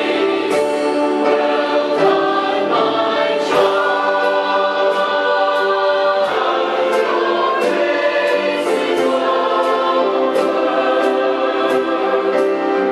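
Church choir singing a gospel song in full harmony over instrumental accompaniment, with a light, regular percussive beat.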